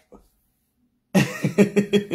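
Near silence, then about a second in a person's voice breaks into a loud run of short, rapid bursts.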